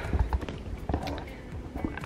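A few sharp knocks and clicks over a low rumble from a camera tripod being handled and adjusted, with background music.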